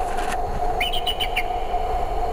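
A steady held tone runs throughout, with a brief high chirping bird call about a second in that rises at its start and falls away at its end.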